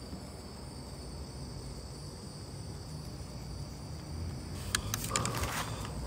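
Steady, high-pitched chorus of night insects. In the last second or so there are clicks and a rustling crunch of movement through dry leaves and undergrowth.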